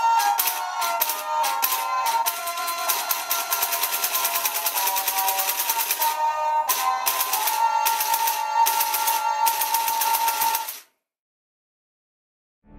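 Tinny electronic music played by Tomy Pop'n Step Star Wars dancing figures, with a fast, even clicking running through it. It stops suddenly near the end.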